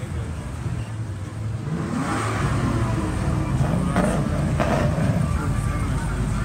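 Car traffic passing, with engine and tyre noise swelling about two seconds in and an engine briefly accelerating.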